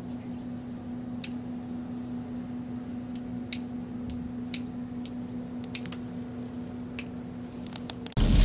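A steady low hum with about six sharp clicks scattered through it.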